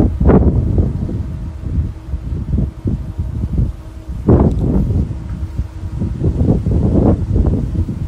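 Wind buffeting a phone's microphone: a loud, uneven low rumble that surges and drops.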